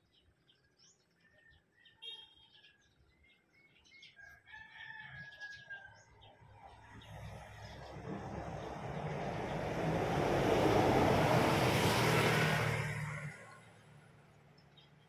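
Birds chirping and a rooster crowing in the first half. Then a broad rushing noise swells up over several seconds to become the loudest sound and dies away near the end.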